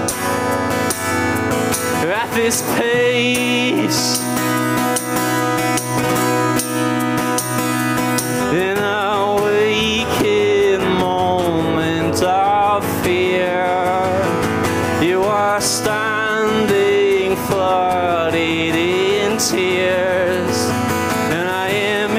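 Acoustic guitar strummed with a harmonica playing over it. From about eight seconds in, a melody with bending, wavering notes comes to the fore.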